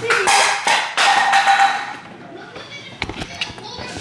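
Excited voices and laughter for about two seconds, then a quick run of sharp knocks about three seconds in: a dropped cup hitting the floor, hard enough to crack it.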